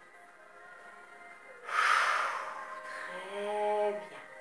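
A woman's long, audible exhale, blown out during a stretch about two seconds in, over soft background music. A held low note sounds near the end.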